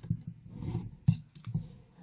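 Rotary cutter and acrylic quilting ruler handled on a cutting mat: a soft scrape and a few light clicks, the sharpest about a second in, as the cut along the quilt block's edge finishes and the cutter is lifted away.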